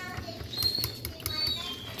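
Metal spoon stirring a watery thickening slurry in a ceramic bowl, scraping against the bowl with several short, thin squeaks.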